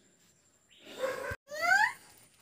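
After a quiet start there is a short pitched vocal sound that ends abruptly in a click about a second and a third in. Near the end comes a brief high cry that rises in pitch.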